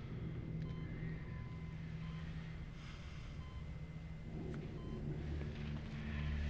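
A bedside medical monitor giving short electronic beeps a little under a second apart, over a low steady hum of room ambience.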